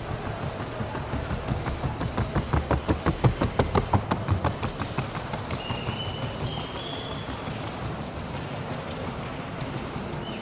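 Hoofbeats of a Colombian trocha mare working at the trocha gait: a fast, even run of sharp hoof strikes, about seven a second, growing loudest a few seconds in and then fading as she moves off.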